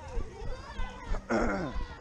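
A loud, bleat-like shout about a second and a half in that falls in pitch, over other runners' distant voices and the regular thuds of running footsteps.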